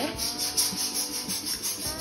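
A scratchy rubbing noise that pulses several times a second.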